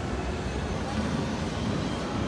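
Indoor shopping-mall ambience: a steady low rumble with indistinct voices of people nearby.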